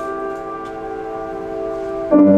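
Music: one sustained chord of several steady notes, held without a break.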